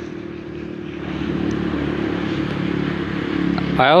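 A motor vehicle's engine running steadily as it passes, growing louder over the first couple of seconds and then holding.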